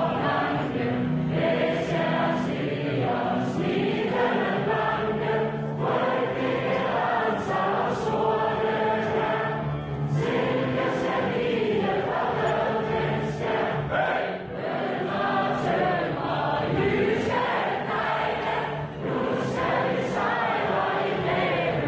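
A large crowd singing a song together, many voices carrying one slow, sustained melody as a communal sing-along.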